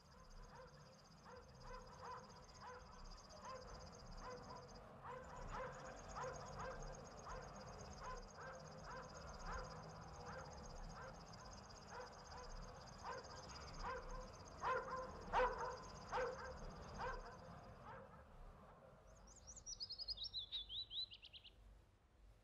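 Water splashing and lapping as someone wades and swims, under a steady high-pitched insect trill. After the splashing stops, a bird gives one quick descending trill of chirps.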